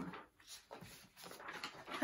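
Faint rustling and shuffling of large paper sheets being handled and swapped, in soft irregular scrapes.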